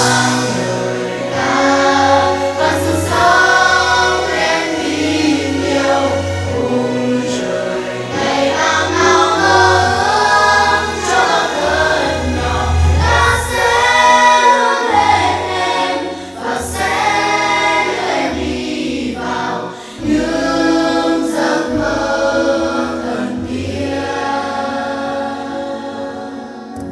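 A choir singing a slow song with instrumental accompaniment and a steady bass line underneath, fading a little near the end.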